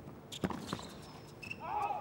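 Tennis ball hit during a baseline rally on a hard court: two sharp knocks about half a second in, a quarter-second apart. A man's voice comes in near the end.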